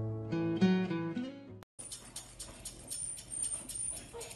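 Instrumental background music, which breaks off about one and a half seconds in. It is followed by grooming scissors snipping through a dog's curly coat in quick, even snips, several a second.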